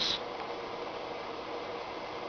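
Steady low background hiss with a faint hum: room tone between words.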